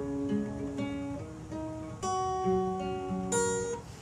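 Steel-string acoustic guitar with a capo on the 6th fret, finger-picked with the thumb and first finger: single notes plucked one after another on alternating lower and higher strings, each ringing on into the next.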